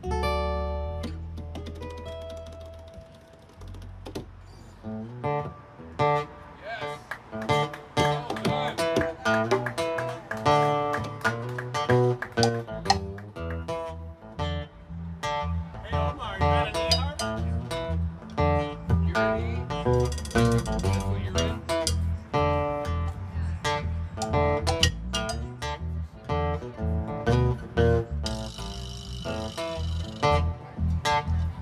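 A live band plays an instrumental passage: strummed acoustic guitar over electric bass in a steady rhythm. A chord rings and dies away in the first few seconds, the full groove starts about five seconds in, and a harmonica comes in near the end.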